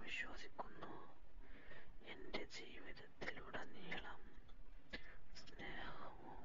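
A person whispering in short, breathy phrases.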